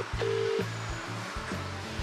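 A telephone ringback tone heard through the phone's earpiece: the double ring, two short pulses of a steady tone with a brief gap, of a call that is not being answered. It plays near the start, over background music with a steady beat.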